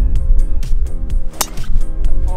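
Background music with a steady beat and heavy bass. About one and a half seconds in, a single sharp crack of a golf driver striking the ball off the tee.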